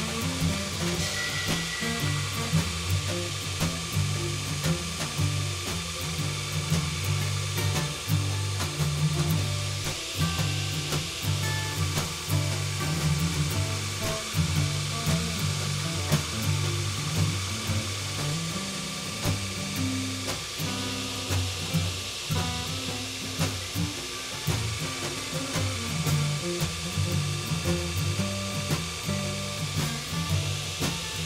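Background music with a low, stepping bass line, over the steady hiss of a 2x72 belt grinder whose abrasive belt is grinding the hardened steel of an old file flat.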